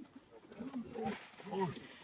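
Macaque giving a run of short calls, each rising and falling in pitch, getting a little louder toward the end.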